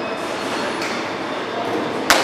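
Steady rushing mechanical noise with no distinct hits or knocks.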